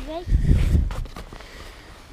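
Low rumbling buffeting on the microphone for about a second, starting just after a spoken word, followed by a couple of faint clicks.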